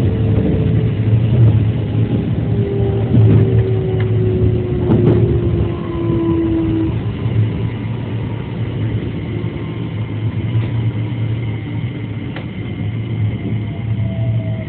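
JR 207 series electric train heard from inside the front car: a steady low rumble with a motor whine that slides down in pitch as the train slows into a station, and a few clicks from the wheels over the track.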